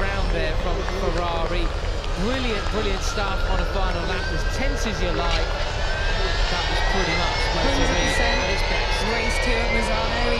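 Electric MotoE racing motorcycles (Ducati V21L) with their motors whining, the whine rising steadily in pitch through the second half as a bike speeds up. A voice is heard over it.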